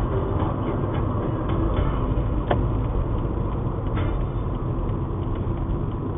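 Steady low rumble of a car's engine and tyre road noise heard from inside the cabin while driving, with two brief sharp clicks about two and a half and four seconds in.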